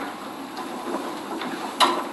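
Courtroom room sound: a low, indistinct background murmur and rustle of people moving, with one sharp click near the end.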